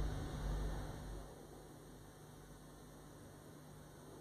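Steady low electrical hum with faint hiss, the background noise of the interview recording, with no speech. A low rumble fades out over the first second.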